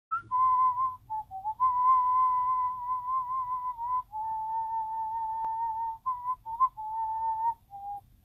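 A man whistling a slow tune through pursed lips, in long held notes with a slight waver and short breaks between them. The notes drop a little lower in pitch about halfway through.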